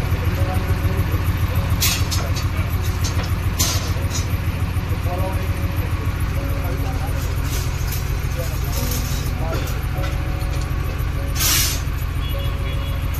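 JCB 3DX backhoe loader's diesel engine running, heard from inside the cab as a loud, fast, even pulse. A few short hisses cut through it, the longest near the end.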